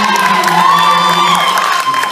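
A male soul singer holds a long high note on the recorded song, played over a hall's sound system, while the audience cheers and whoops.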